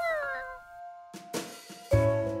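A cartoon monkey character's voice gives a short, falling, pitched vocal sound over a held music note. Louder piano music comes in near the end.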